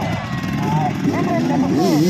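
Enduro dirt bike engine revving under load on a dirt climb, its pitch rising and falling, with voices shouting over it.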